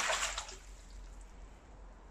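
A brief splash of water as a landing net is lifted out of a garden koi pond, then faint dripping.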